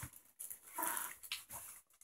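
A dog whimpering faintly, once, about a second in, with a few small clicks around it.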